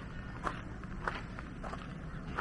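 Footsteps of a person walking, a short step sound about every half second, over a steady low rumble.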